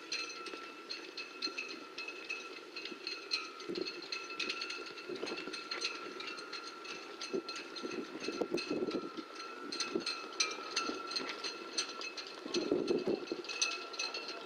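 Show-jumping horse on a sand arena course, with hoofbeats and heavier thuds around 8–9 s and again near the end. Scattered clinks run through it over a steady high-pitched whine.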